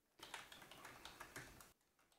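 Faint computer keyboard typing: a quick run of keystrokes that stops shortly before the end.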